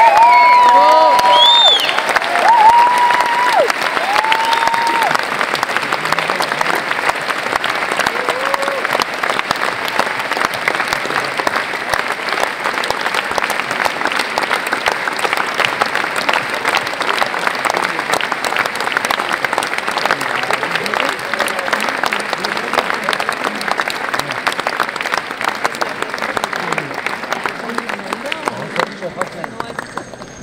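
A large theatre audience applauding in a long ovation, a dense, even clapping that slowly grows softer toward the end.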